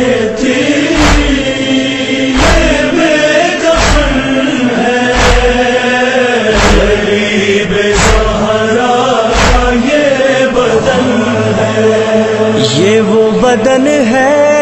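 Voices chanting a noha, a Shia mourning lament, in a slow, drawn-out melodic line. A regular thump sounds about every second and a half and stops about ten seconds in.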